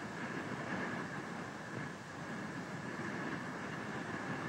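Steady background noise with a faint high hum: the open ambient sound of a live launch-pad camera feed, with no distinct events.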